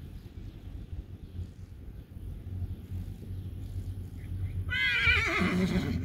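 A horse whinnying once near the end: a high, quavering call that falls steeply in pitch over about a second.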